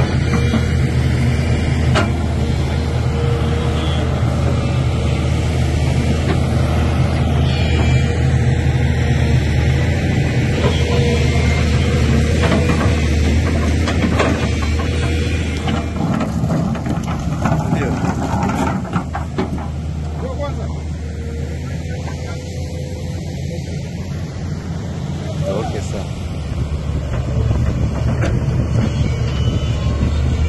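Diesel engine of a Shantui crawler excavator running with a steady low hum, easing off in the middle and picking up again near the end, with people talking in the background.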